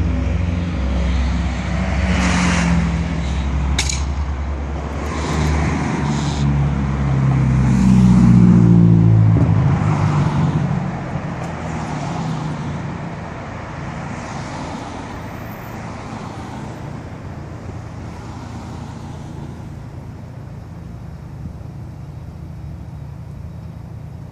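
Street traffic: a low engine drone with shifting pitch and vehicles passing by, loudest about eight seconds in. The drone stops about nine and a half seconds in, leaving a steadier, quieter traffic hum.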